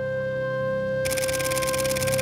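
Camera shutter firing in a rapid continuous burst starting about a second in and running for over a second, over background music of a single held flute-like note above a low drone.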